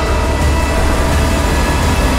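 A loud, steady low rumble under a dense wash of noise, with a few faint held tones: the trailer's sound-design drone.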